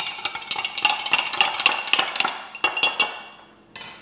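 Metal spoon stirring powder into water in a glass mason jar, clinking rapidly against the glass. The stirring stops about three seconds in, with one more clink near the end.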